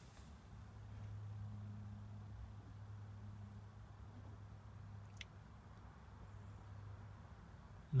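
Faint, steady low hum from the alarm horn in the boot of a 1999 Porsche 996 Carrera, sounding with the car parked and switched off. The owner has found this constant noise while chasing a battery drain. One faint click comes about five seconds in.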